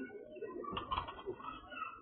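Pigeons cooing amid the continual high peeping of many chicks, with one short sharp noise about three-quarters of a second in.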